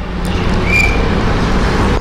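Steady background noise with a low rumble and hiss, and a brief high tone about three-quarters of a second in.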